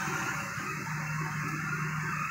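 Steady background hiss of a phone recording in a pause between speech, with a faint low hum coming in about halfway through.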